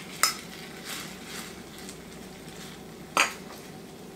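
Two sharp clinks of a spoon against a small bowl, one just after the start and one about three seconds in, with soft handling of kitchenware in between.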